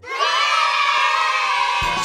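A crowd of children cheering and shouting together in one long cheer that starts suddenly and fades near the end.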